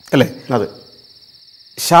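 Insects chirring in a steady, high-pitched, finely pulsing trill that runs on unbroken behind a man's voice. A couple of short words come early on and speech resumes near the end.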